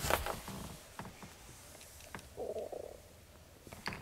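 Faint handling and movement noise as the camera is carried into a car's cabin: soft rustles and a few light clicks, with a brief muffled low sound a little after halfway.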